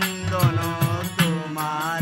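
Live Bengali folk song: a man sings over a harmonium's held drone, with hand-drum strokes keeping the beat.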